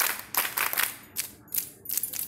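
A group of schoolchildren clapping together in short, irregular bursts with brief gaps between them.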